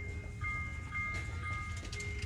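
FAO Schwarz lighted musical Christmas tree village toy playing its electronic tune of thin, chime-like notes, a new note about every half second.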